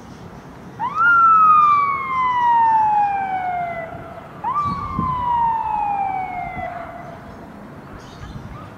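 Police armoured vehicle's siren giving two wails, each jumping up quickly in pitch and then sliding slowly down over about three seconds; the first starts about a second in, the second about four and a half seconds in.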